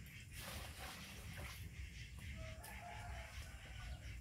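A faint, drawn-out animal call about two and a half seconds in: one note that steps up in pitch and holds for about a second, over a steady low rumble.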